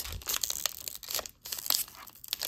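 Foil wrapper of a Topps baseball card pack being torn open by hand, with irregular crinkling and crackling and a brief lull a little past halfway.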